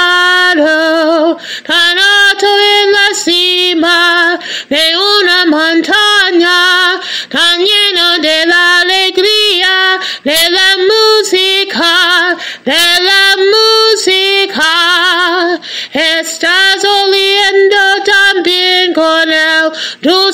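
A woman singing solo and unaccompanied, a run of held notes with a wide vibrato, phrase after phrase with short breaths between.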